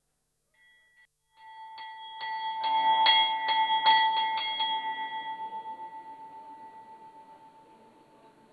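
Temple bell rung by hand at the start of an aarti: a quick run of strikes, about two or three a second, from about two to five seconds in, then the ringing slowly fades away.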